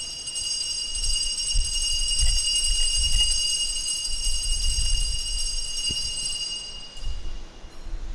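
Altar bell ringing steadily at the elevation of the chalice during the consecration, a high, shimmering ring that stops about seven seconds in, over a low rumble.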